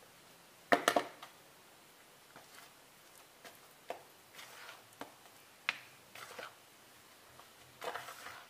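A hand mixing fish paste with tapioca flour in a plastic bowl: soft, faint squishes and scattered light taps, with one sharp knock a little under a second in.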